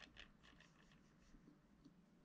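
Faint scratching of a wire loop sculpting tool scraping oil-based modelling clay: a few short strokes in the first second, then a couple of lighter scrapes.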